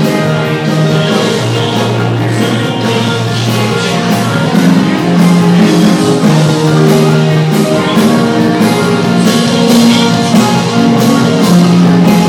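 Live rock band playing a song, with drum kit and electric guitar, loud and steady.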